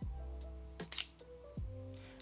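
Quiet background music of held notes, with a few soft clicks about a second in from the camera's shutter as it takes the photo for face registration.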